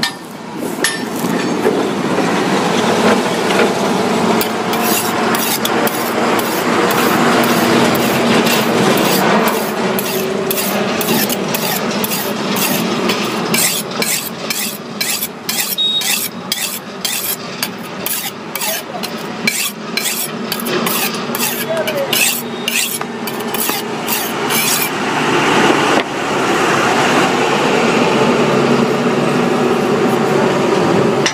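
Steel knife blade scraping in quick repeated strokes, about two a second, as it works tyre rubber and is drawn across a sharpening stone; the strokes stop a few seconds before the end.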